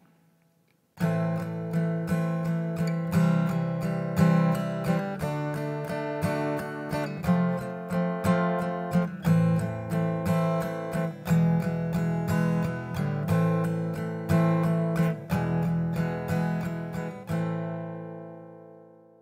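Steel-string acoustic guitar strummed in a ternary (triplet) rhythm, three strokes to each beat, playing chords as an example song. The strumming starts about a second in and ends on a last chord left ringing and fading.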